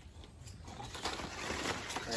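Rustling and tearing of nipa palm leaves as a young leaflet is pulled and stripped from the frond by hand, starting faint and growing louder about a second in.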